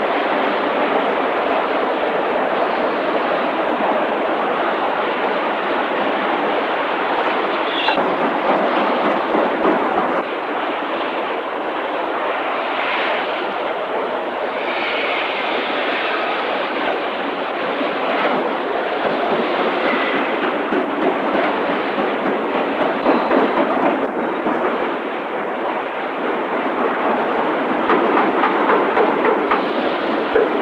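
Continuous loud din of a car-body assembly line: steady machinery noise with scattered clanks and rattles, which grow busier near the end.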